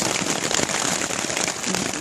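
Heavy rain hitting a tarp shelter overhead: a dense, steady patter of countless drops on the stretched fabric, loud enough to drown out a voice.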